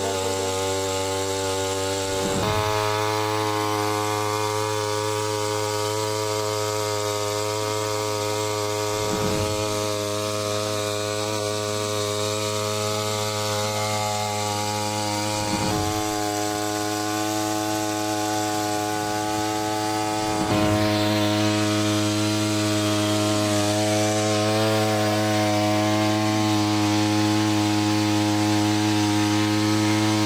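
Small engine of a handheld paddy-cutting machine, fitted with a water-pump head, running steadily at high speed while it pumps a jet of water out of a pond. It gets a little louder about two-thirds of the way in.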